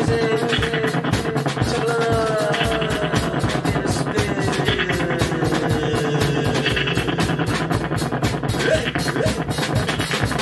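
Improvised live band music with a steady quick beat, about four strokes a second, under long tones that slide slowly down in pitch. A couple of short upward glides come near the end.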